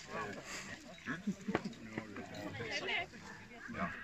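Several people's voices talking indistinctly.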